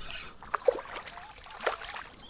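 Light water splashing and trickling beside a kayak, with short sharp splashes about half a second in and again near the end.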